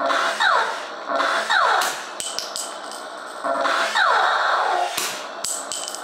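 R.A.D. radio-controlled toy robot firing its spring-loaded foam rockets. There are three launches, at the start, about a second in and about three and a half seconds in, each a short burst with a sound falling in pitch. A few sharp knocks come in between.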